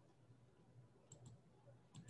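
Near silence: faint room tone with a low hum and two small clicks a little past halfway.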